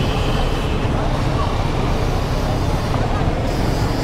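Busy street traffic: small engines of motorcycles and an auto-rickshaw running in a steady low rumble, with people talking around them.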